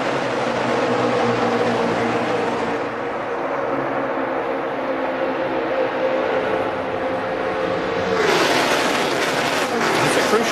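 A pack of NASCAR Sprint Cup stock cars' V8 engines drones at a steady high pitch as the cars race in a tight draft. About eight seconds in, the pitch drops and a brighter rush of noise takes over as the pack sweeps past.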